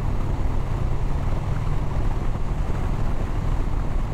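Harley-Davidson Heritage Softail's V-twin engine running at a steady cruise, with wind rushing over the microphone.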